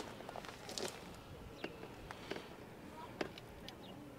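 Faint, scattered clicks and taps of hands handling food and a plate on a plastic camping table, the sharpest a little after three seconds, over a quiet outdoor background.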